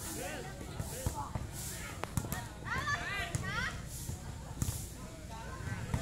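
Outdoor volleyball game: young players and onlookers calling and shouting, with a burst of high shouts about halfway through and a couple of sharp smacks of the ball being hit.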